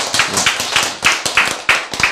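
Audience members clapping their hands: a fast, irregular run of claps.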